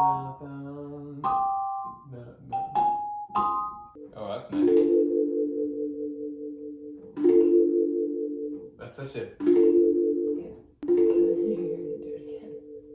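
Electronic keyboard played: a few quick, short notes at first, then one held chord struck four times, each ringing for one to two and a half seconds.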